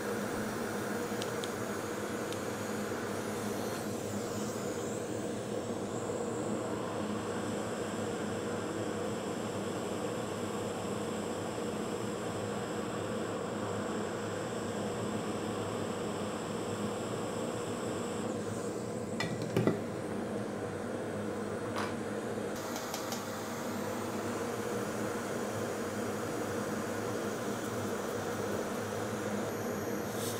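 Hot-air rework station blowing steadily, a hum and hiss, while a boost coil is reflowed onto a phone logic board. A single sharp click comes about two-thirds of the way through.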